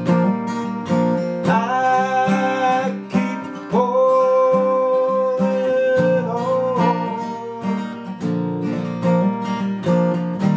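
Steel-string acoustic guitar strummed in a steady rhythm, with a man singing two long held notes over it in the middle.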